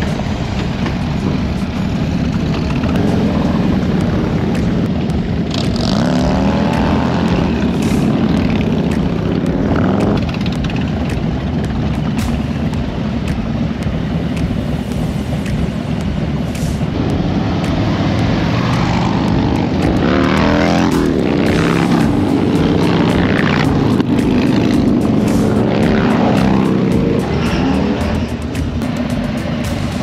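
Harley-Davidson V-twin motorcycle engines of a group ride, heard from one of the bikes: a steady loud engine drone with several revs rising and falling in pitch as the riders accelerate and shift.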